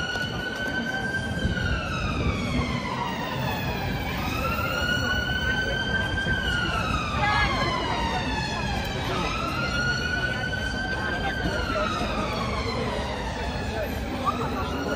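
Emergency vehicle siren on a slow wail, rising, holding, then falling in pitch in cycles about five seconds long, over the chatter of a busy crowd.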